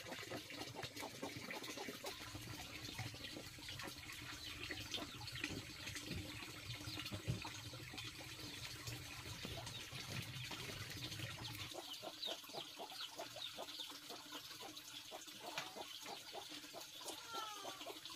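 Faint crackling and ticking of a wood fire burning in an earthen stove, with a few short bird chirps near the end.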